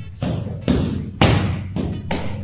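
A heavy punching bag being struck repeatedly: about four dull thuds, roughly half a second apart, each dying away quickly.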